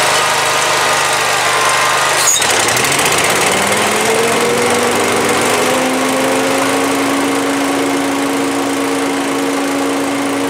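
Gravely Pro-Turn zero-turn mower engine idling, then throttled up a little over two seconds in: a click, then a rising pitch over about three seconds that settles into a steady high-speed run.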